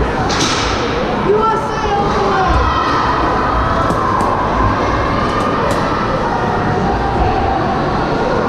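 Ice hockey game in a rink: a steady din of spectators' and players' voices and calls, with a few sharp knocks of sticks and puck on the ice and boards.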